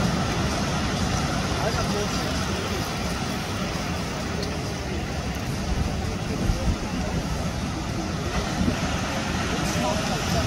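Steady noise of ocean surf breaking on the shore, with wind buffeting the microphone in a low rumble and faint distant voices.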